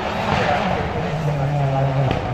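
Rally car engine running hard as the car drives past, its note settling into a steady high pitch about a second in.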